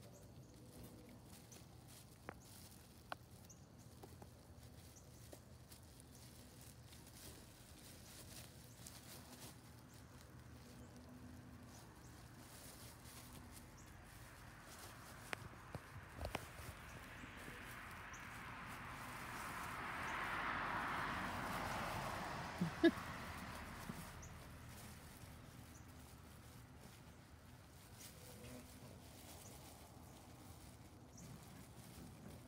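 Faint scuffling of standard poodle puppies at play on grass, tugging and rustling a plastic play mat, with a few light knocks. A soft rushing noise swells and fades over about ten seconds in the second half.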